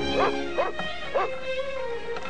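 Cartoon puppy yipping three times, short rising-and-falling yaps about half a second apart, over background music.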